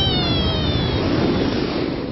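Cartoon flight sound effect: a whooshing rush with a whistle that falls in pitch, fading a little near the end.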